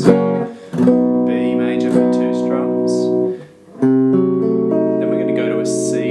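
Gibson semi-hollow electric guitar strumming chords, each left to ring, in a slow progression, with a short break about three and a half seconds in before the next chord.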